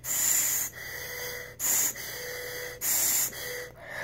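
Breathing through the mouthpiece of an asthma spacer (valved holding chamber): three loud, airy breaths about a second and a half apart, with softer breathing between them.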